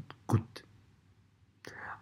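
Speech only: a man's voice says one short word, then a pause of about a second, then a soft breathy sound near the end as he draws breath to speak again.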